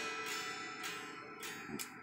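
Faint ringing of an electric guitar's strings heard without amplification, slowly fading, with a few light ticks as a hand works the looper pedal. No signal is reaching the amp through the looper.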